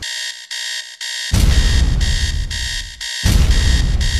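Electronic alarm beeping in pulses about twice a second, with a loud deep rumble coming in about a second in and cutting out briefly near the end.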